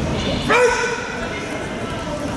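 One short, loud shout, sharply rising at its onset, about half a second in, over the steady chatter of a crowded sports hall.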